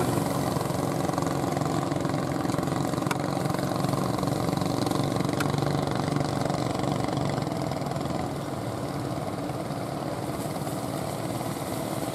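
Fishing boat engines running steadily over a steady hiss, a little quieter from about eight seconds in.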